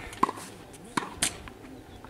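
Tennis ball struck by rackets and bouncing on a hard court during a rally: three sharp pops, the loudest about a quarter second in and two close together a second later.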